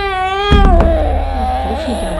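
A high, drawn-out wailing voice that drops in pitch and wavers from about half a second in, over a loud low rumble.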